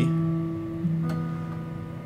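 Acoustic guitar being fingerpicked slowly: a few single notes plucked one at a time and left ringing, fading away, with a low note picked a little under a second in.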